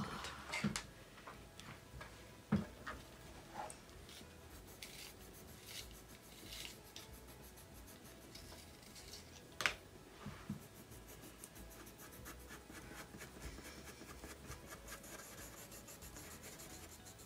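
Colored pencils scratching and rubbing on paper in short shading strokes, faint, with a couple of sharp taps about two and a half and ten seconds in. For the last several seconds the strokes come quickly, close together.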